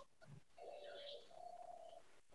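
Near silence, with a faint bird call in the background: two short held notes.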